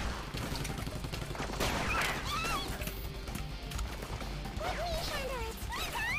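Cartoon sound effect of rapid gunfire, a dense run of shots from the CG shark's mouth-gun, over background music.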